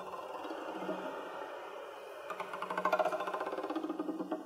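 Zither strummed with a pick, its strings ringing together and turning to a fast tremolo of strokes in the second half. Under it an accordion holds a low note that breaks briefly and comes back.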